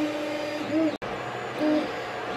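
Creality CR-10S 3D printer running: its stepper motors whine in steady tones that shift in pitch as the print head moves, over the hiss of the cooling fans. The sound cuts out for an instant about halfway through.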